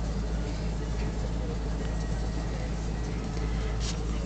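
Domestic cat purring steadily as its head and neck are rubbed, a low continuous rumble.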